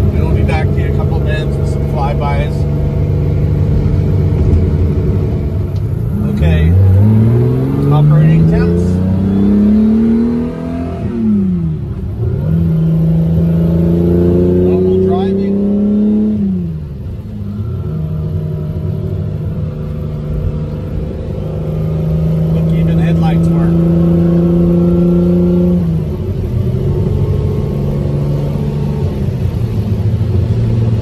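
Ferrari 365 GTC/4's V12 engine heard from inside the cabin on the move: the revs climb twice in the first half, falling back between climbs, then hold steady for several seconds before dropping again near the end.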